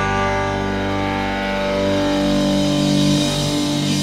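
Instrumental psychedelic rock passage with guitar: long chords held and ringing over sustained low notes, no vocals.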